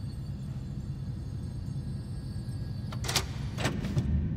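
A low steady rumble from a TV drama's soundtrack, with two short noisy sounds about half a second apart near the end.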